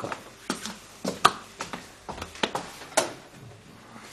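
A handful of light, separate knocks and clicks of objects being handled on a desk, the sharpest about a second in, over a quiet room background.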